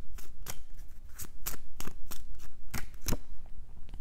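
A tarot deck being shuffled by hand to pull another card: a quick, irregular run of crisp card clicks and snaps, about four or five a second.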